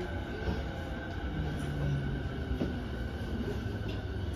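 JR 209 series 500 subseries electric train heard from inside the car, braking to a stop at a station platform: a steady low rumble of the wheels on the rails, with a low electric motor hum rising and fading as it slows.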